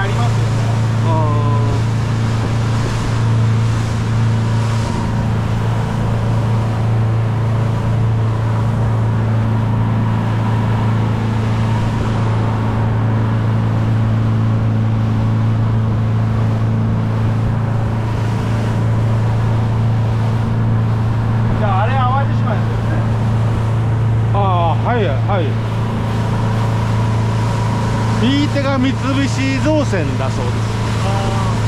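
Motorboat engine running steadily at cruising speed, a constant low drone, over the rush of wind and water past the hull. A few short bursts of voices come in over it in the second half.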